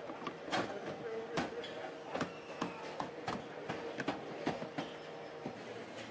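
Car assembly line: an irregular run of sharp clicks and knocks, about three a second, as a plastic bumper panel is pushed and clipped onto the body, over a steady machine hum.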